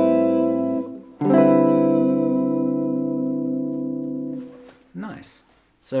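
Clean electric guitar playing an A minor ninth chord, held about a second, then a D7 suspended chord that rings and slowly fades for about three seconds before being cut off.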